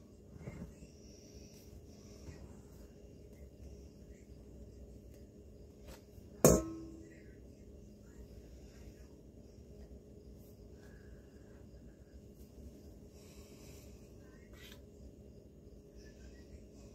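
Quiet kitchen room tone with a low steady hum and faint scraping of a silicone spatula spreading meringue. A single sharp knock with a short ring comes about six and a half seconds in.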